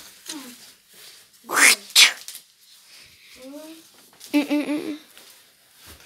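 A young child's voice making playful non-word noises: two sharp breathy hisses about one and a half and two seconds in, then a few short pitched squeals a little past the middle.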